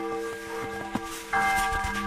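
Large church bell tolling for the Saturday evening helgmål ringing, which marks the start of Sunday. The hum of one stroke fades, and the next strike sounds about a second and a third in, setting off a fresh stack of ringing tones.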